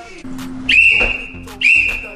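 Metal whistle blown in sharp, steady blasts: one long blast of about a second beginning under a second in, then a second blast starting near the end.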